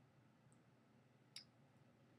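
Near silence: faint room tone, broken by one short, sharp click about a second and a half in.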